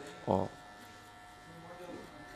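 Electric hair clipper with a No. 1 guard running with a faint steady buzz as it cuts short hair on the side of the head.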